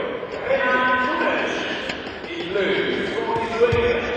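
A man's voice speaking, commentary-like, throughout, with a short dull thump near the end.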